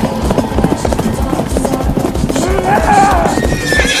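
Galloping horse hooves beating fast and evenly over music. In the second half a horse neighs, a long wavering whinny that climbs in pitch near the end.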